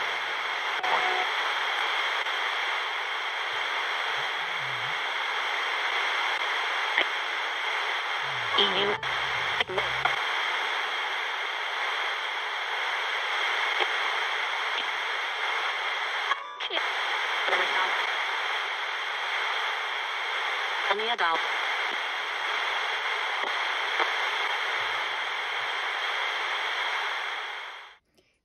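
Sony pocket AM radio used as a spirit box, its tuning sweeping across the band: steady radio static with a few brief snatches of broadcast voice, around nine, seventeen and twenty-one seconds in. The static cuts off abruptly at the end.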